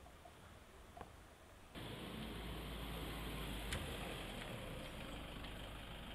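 Faint quiet ambience, then from about two seconds in the low, steady hum of a pickup truck's engine idling, with hiss.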